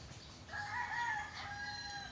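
A rooster crowing: one long, steady call starting about half a second in and holding for more than a second.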